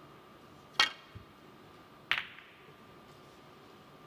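Snooker break-off shot: a sharp click as the cue strikes the cue ball about a second in, then a second click with a short ringing rattle just over a second later as the cue ball hits the pack of reds.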